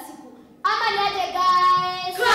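A girl singing: a short break about half a second in, then a sung phrase with held notes.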